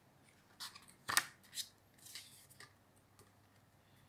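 Paperback picture book being opened: a few brief papery flaps and rustles of the cover and pages turning, the loudest about a second in.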